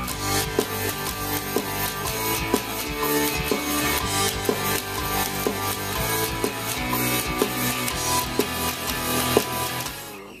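Warwick electric bass guitar played in held low notes along with music that has a drum beat, an accent about once a second.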